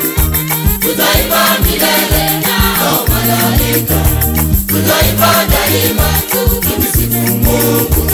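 Swahili gospel choir singing together over a steady beat, with a bass line and a rattling percussion pulse. The voices come in about a second in.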